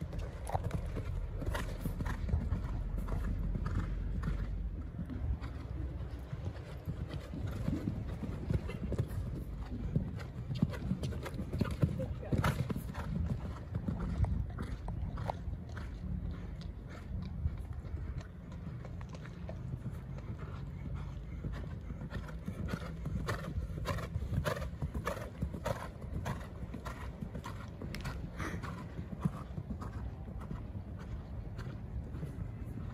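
Hoofbeats of a horse cantering on a sand arena surface, a running series of short thuds.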